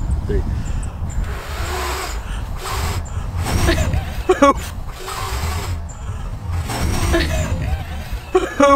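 Two people blowing on dandelion seed heads: several breathy puffs of air, with a few bursts of voice or laughter between them. Low wind rumble runs underneath.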